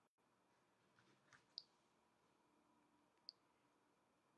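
Near silence broken by a few faint, sharp clicks, a cluster around the middle and a single one later.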